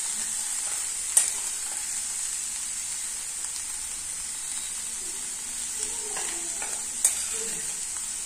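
Sliced onions, green chilli and potato frying in oil in a non-stick kadai, a steady sizzle, while a wooden spatula stirs them. Two sharp clicks come through, about a second in and again near the end.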